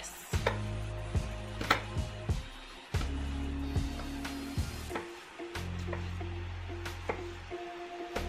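Chef's knife chopping peeled tomatoes on a wooden cutting board: irregular sharp knocks as the blade hits the board, over background music.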